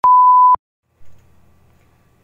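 Film-leader countdown beep: a single steady electronic beep lasting about half a second that cuts off sharply. From about a second in, only a faint low hum remains.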